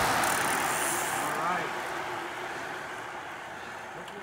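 Rushing road noise of a motor vehicle passing on the road, fading away steadily as it moves off, with faint voices in the background.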